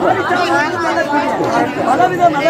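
Speech: several voices talking over one another, with no other sound standing out.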